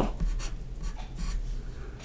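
Marker pen on paper in a few short scratchy strokes, writing a plus sign, a 4 and a closing bracket.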